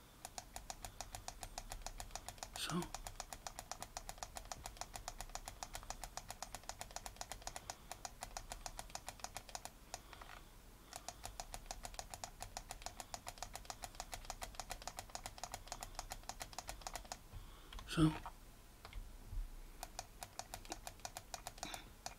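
Computer mouse scroll wheel ticking rapidly and evenly in long runs, several notches a second, as it pans and zooms the view. There is a pause at about 10 s and another at about 17 s. A short vocal sound comes at about 3 s and a louder one at about 18 s.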